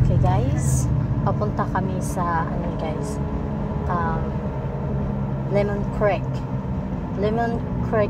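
A woman talking over the steady low rumble of a car driving, heard from inside the cabin.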